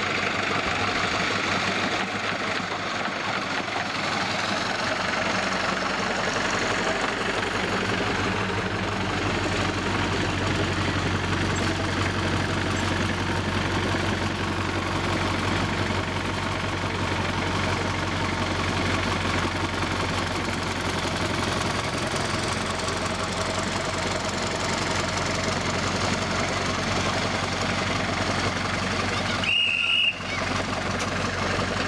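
Engine of a streamlined miniature railway locomotive running steadily as it travels along the track and draws up, a continuous mechanical hum.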